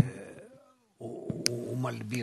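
A man's voice holding a low, drawn-out hesitation sound, like a long "uhh", starting about a second in and lasting about a second and a half, with a short click in the middle.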